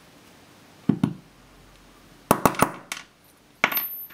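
Small steel jig parts and pins being handled and set down on a wooden bench: light clinks and clicks, a couple about a second in, a quick run of three or four after two seconds, and a few more near the end.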